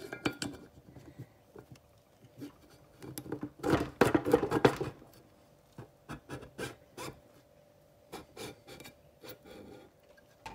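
Metal engine parts being handled: scattered clicks, clinks and rubbing as a small two-stroke outboard's crankshaft and bearings are fitted into the crankcase, with a louder run of clatter about four seconds in.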